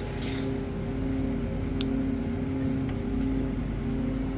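Steady mechanical hum of supermarket freezer cabinets and ventilation, with a couple of held low tones over a rumble. There is one faint tick a little under two seconds in.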